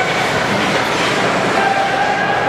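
Continuous noise of an ice rink during play, with skates on the ice and spectators' voices blending into a steady din. A drawn-out, held call rises out of it in the second half.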